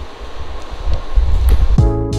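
Low rumbling handling noise on the microphone as the camera is moved and set down, then background music with a drum beat starting near the end.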